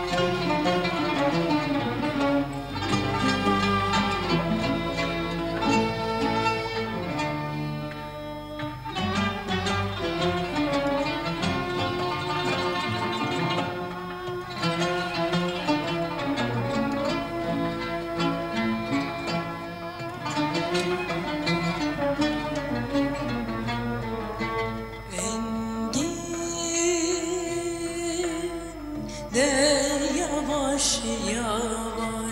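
Instrumental introduction to a Turkish art-music song, an ensemble of strings with plucked notes playing before the singer comes in. The music thins briefly twice, and a new, higher passage with wavering notes starts near the end.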